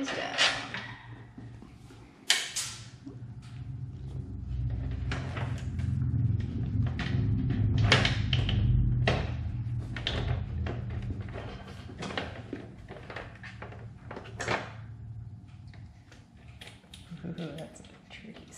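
Scattered clicks and knocks as a Toyota Tacoma grille and its small fasteners are handled on a workbench, with a low rumble that swells through the middle and fades.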